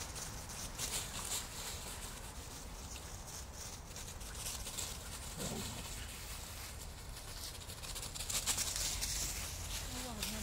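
Two dogs' paws running and scuffling through dry fallen leaves, an irregular rustling, with one brief low vocal sound from a dog about five and a half seconds in.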